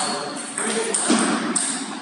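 Table tennis rally: the plastic ball clicking back and forth off the rackets and the table.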